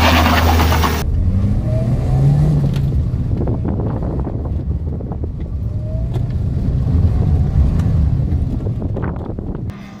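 Toyota Starlet's engine revving hard as the car launches and is driven through a cone slalom, its pitch rising and falling with the throttle. For about the first second it is heard from outside the car, then from inside the cabin.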